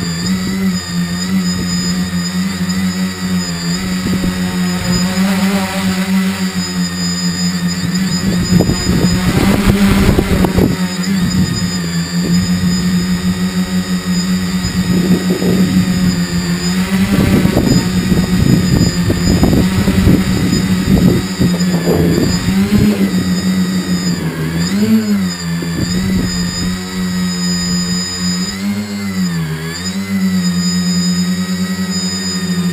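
Tricopter's electric motors and propellers whining steadily in flight, the pitch dipping and rising several times as the throttle changes. Gusts of wind rush over the onboard microphone in the middle.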